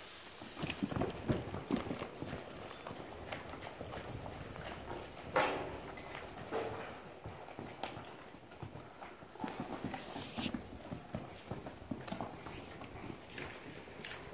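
Hooves of saddled mules walking on soft arena sand: muffled, irregular footfalls. There is a short, louder sound about five seconds in.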